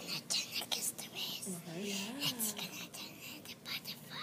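Hushed whispering voices, close to the microphone, with one voice drawing out a wavering murmur about halfway through.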